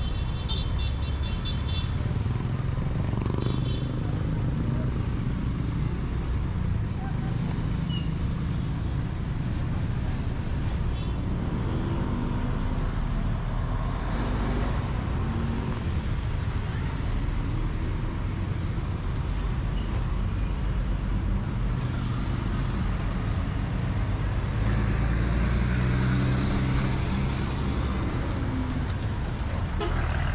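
Street traffic: a steady low rumble of vehicle engines and tyres passing on the road, growing louder near the end as heavier vehicles, including a large box truck, come close.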